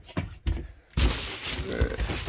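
Two light knocks of a wooden cabinet door being opened, then from about a second in a loud crinkling rustle of foil bubble insulation (Reflectix) being handled and brushed against.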